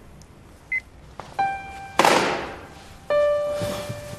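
Film score starting up: single sustained piano notes, the first a little past a second in and another after three seconds, with a loud sudden crash-like hit in the middle that fades away over about a second. A short high beep sounds just before the first note.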